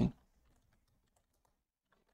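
Faint, scattered computer keyboard keystrokes.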